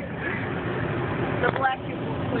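Car driving slowly, heard from inside the cabin: steady engine and road noise, with voices and a short laugh over it.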